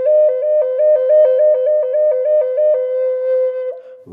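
Native American flute playing a slow, even trill between two neighbouring notes, made by opening and closing the third finger hole from the top. Near the end it settles on the lower note, holds it for about a second and stops.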